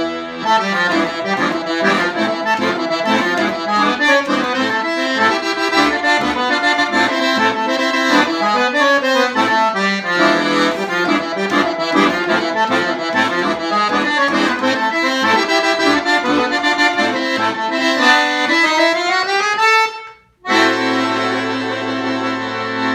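Excelsior piano accordion played on the master register, all its reed sets sounding together: a quick tune with chords. Near the end comes a rising run, a short break, then a held chord with bass.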